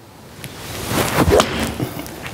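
A golf iron swung through a full shot: a rising swish, then a sharp strike as the clubhead hits the ball off an artificial-turf practice mat, about a second in.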